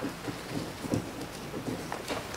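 Quiet room noise in a meeting hall: a steady hiss with faint rustling, small ticks and indistinct low voices.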